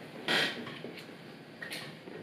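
Brief handling noises as a fishing rod is taken down from a wall rack: a short rustle, a light click, and another short rustle near the end.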